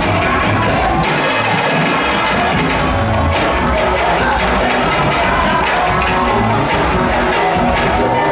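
Live band music played loud: cavaquinho, hand percussion, drum kit, keyboard and electric bass in a steady rhythm, with a crowd cheering along.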